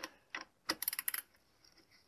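Metal clicks from a worm-drive hose clamp being tightened hard with a socket driver around a broom's bristles and handle: a couple of separate clicks, then a quick run of about eight clicks a little before halfway through. The clamp is being driven close to as tight as it will go without stripping.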